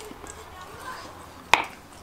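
Quiet room tone with a single sharp click about one and a half seconds in.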